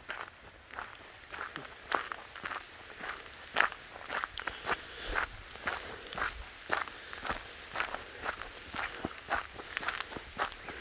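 Footsteps of a person walking on a gravel forest track, crunching at an even pace of about two steps a second.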